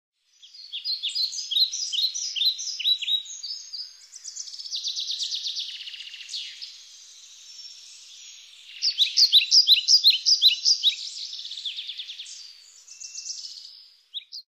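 Songbirds singing: phrases of quick, repeated high chirping notes, with a buzzier trill between them, starting about half a second in.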